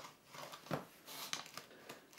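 Faint handling noise with a few soft clicks as a sticky plastic iRoller touchscreen cleaner is rolled over a smartphone's glass screen lying on a table.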